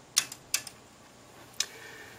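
Elecraft K3 transceiver's relays clicking as it switches bands: a few quick clicks just after the start and one more near the end.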